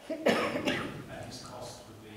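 A person coughing: a loud, harsh cough about a quarter of a second in, with quieter speech after it.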